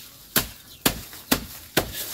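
Machete chopping a bundle of green fodder grass against a wooden stump used as a chopping block: four sharp chops, about two a second.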